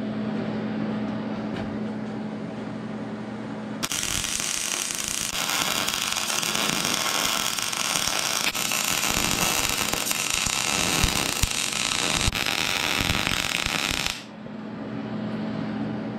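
MIG welder running one continuous bead for about ten seconds, a steady arc sound that starts about four seconds in and cuts off near the end. The bead joins a mild-steel truss to a preheated cast-steel differential center section. A steady low hum runs before and after the arc.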